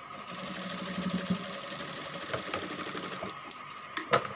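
Electric flat-bed sewing machine running a continuous seam at a fast, even stitch rate for about three seconds, then stopping, with a few separate clicks near the end. A steady high hum runs underneath.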